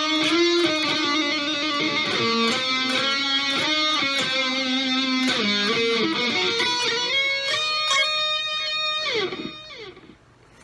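Electric guitar played on the bridge pickup through an amp-simulator plugin with a TSB-1 boost and a delay set to three eighth notes: single-note lead lines with sustained, bent notes, testing the solo tone. Near the end it slides down and fades away.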